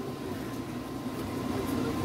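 Steady low background rumble, with no distinct event standing out.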